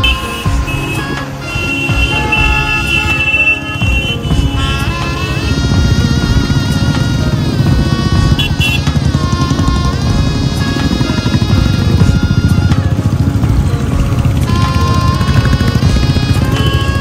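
Several Royal Enfield motorcycles running close together in a group ride, their engines getting louder about five seconds in, with music playing over them.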